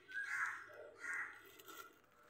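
A crow cawing: short harsh caws about half a second to a second apart, the last one fainter.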